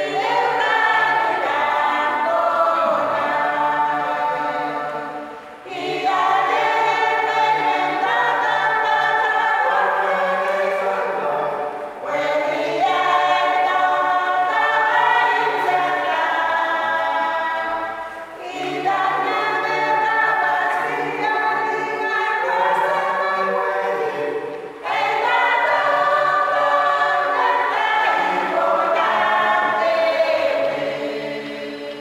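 Small choir singing unaccompanied, in long phrases of about six seconds with brief pauses for breath between them.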